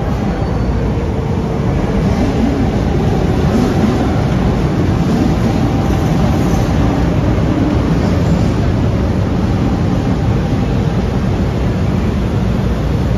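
Light-rail train running past close to the platform, a steady rumble of wheels on rail with a faint motor tone, growing slightly louder about two seconds in.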